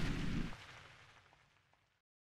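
The tail of a deep cinematic boom in a logo sting, rumbling on for about half a second and then dying away within a second and a half.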